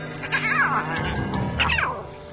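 Two high mewing calls from lion cubs, each falling in pitch, the first about half a second in and the second near the end, over background music.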